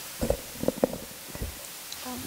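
A table-stand microphone being handled and swung to a new position, giving a few short, low bumps and thumps through the sound system: two about a quarter of a second in, two more near the middle, and a last one a little before the end.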